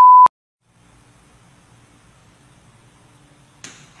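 A 1 kHz TV test tone, the steady beep that goes with colour bars, cuts off with a click about a quarter second in. Faint low background noise follows.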